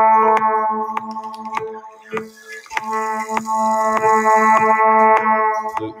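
Electronic play-along backing track: long held synthesized notes over a steady ticking beat, dipping briefly about two seconds in, with a hissing swell in the middle.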